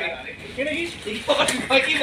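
People talking, with a brief quieter gap at first, and a single sharp click about one and a half seconds in.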